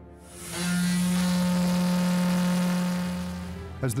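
Car ferry's ship horn giving one long, steady blast of about three seconds, then fading out.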